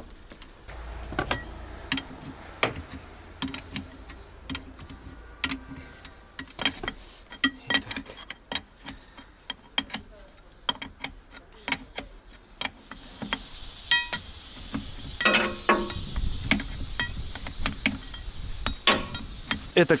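Irregular metallic clinks and knocks of steel hydraulic hose fittings being handled and fitted by hand at a wheel loader's hydraulic valve block, a few of them sharper and louder. A hiss-like noise rises for a few seconds past the middle.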